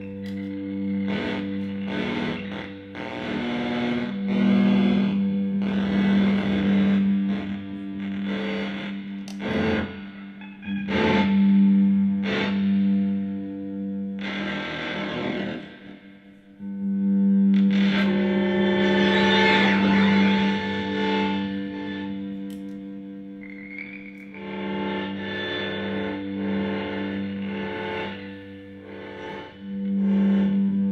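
Electric guitar run through a board of effects pedals, making a sustained drone with layered tones and sharp, noisy attacks. It drops away briefly about halfway, then swells back louder and rougher.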